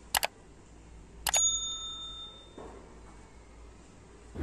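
Subscribe-button animation sound effect: a quick double mouse click, then about a second later another click and a notification-bell ding that rings out for about a second.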